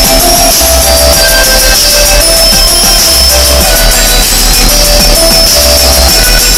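Very loud electronic dance music with deep bass notes that swell every couple of seconds, played through a car's custom competition audio system.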